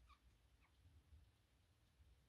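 Near silence: room tone with a low hum and a couple of faint, very short high chirps.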